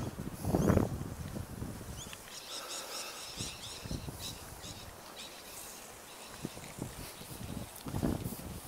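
A small bird chirps a quick run of repeated high notes a couple of seconds in, over outdoor wind hiss and scattered footsteps on concrete. There is a low bump just under a second in.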